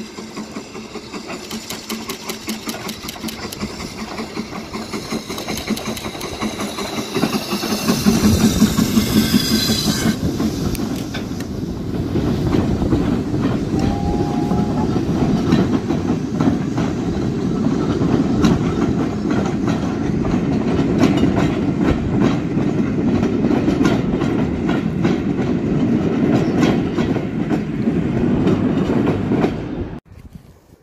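Steam locomotive approaching and passing close below with a quick, even beat of exhaust chuffs that grows louder, loudest about eight seconds in. Its train of coaches then rolls past with a steady rumble and the clickety-clack of wheels over rail joints.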